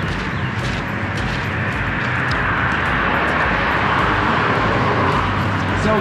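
Outdoor noise: a steady rushing that grows louder in the second half, with light footsteps on paving.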